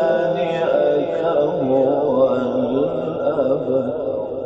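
A man's voice reciting Quran in a melodic, drawn-out style, holding long ornamented notes whose pitch winds up and down.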